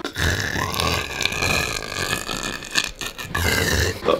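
A man's long, drawn-out raspy croak from the throat, like a belch, acted as a comic death rattle.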